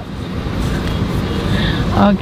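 Vehicle rumble heard from inside a car cabin, growing steadily louder.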